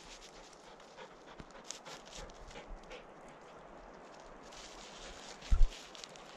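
A dog panting and moving over a granite boulder close by, its paws scuffing and clicking lightly on the rock. A double low thump about five and a half seconds in is the loudest sound.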